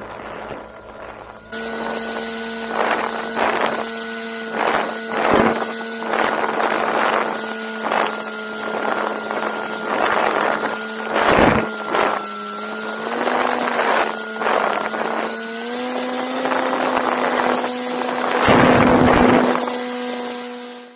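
Electric motor and propeller of a radio-controlled paramotor running in flight with a steady whine, coming in about a second and a half in and stepping up a little in pitch twice in the later part. Repeated gusts of wind buffet the onboard camera's microphone, the loudest near the end.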